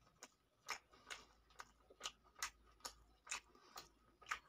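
Close-up chewing with closed lips: faint, soft wet mouth clicks in a steady rhythm of about two a second.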